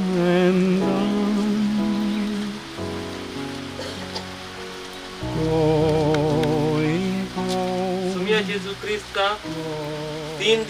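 A slow song: a singing voice holding long notes with vibrato over sustained accompanying chords, softer for a couple of seconds in the middle, with rain falling throughout.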